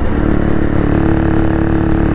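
125cc motorcycle engine running at a steady cruising note while riding, with wind noise on the microphone.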